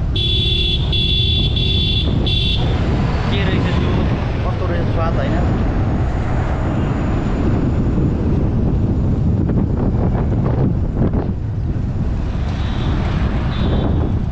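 A vehicle horn honking in about four quick blasts in the first two and a half seconds, over the steady low rumble of riding a motorcycle through city traffic; a shorter honk comes again near the end.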